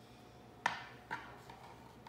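A metal offset spatula knocking twice against a glass baking dish while spreading frosting, two sharp clinks about half a second apart, the first louder.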